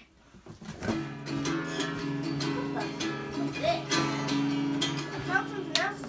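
An acoustic guitar being strummed, its chords ringing, starting about a second in after a moment of quiet.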